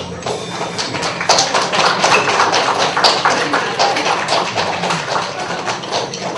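Audience applauding: dense, irregular clapping that starts as the last note stops, with a few voices mixed in.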